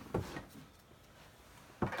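Two light knocks from thread cones being handled and set on a sewing machine's thread stand: a soft one at the start and a sharper one near the end, with quiet room tone between.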